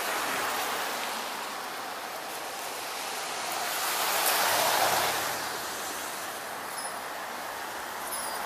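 Car tyres hissing on a wet road as traffic passes, the rushing noise swelling to its loudest about halfway through and then fading.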